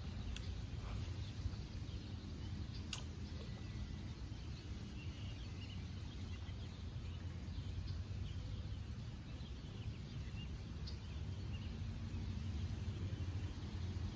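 Outdoor pond-side ambience: a steady low rumble with faint bird chirps now and then, and one sharp click about three seconds in.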